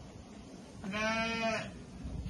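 A sheep bleating once, a single steady call lasting under a second, starting about a second in.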